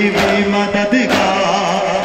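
A crowd of men chanting a noha lament in unison, with sharp slaps of hand-on-chest matam landing together about once a second.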